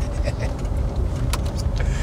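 Steady low rumble of road and engine noise inside a moving car's cabin, with a faint click a little over a second in.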